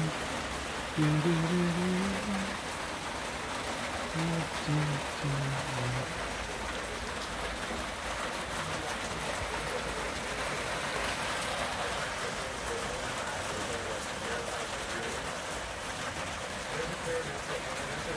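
Steady rain falling, an even hiss throughout. A voice sounds briefly a few times in the first six seconds.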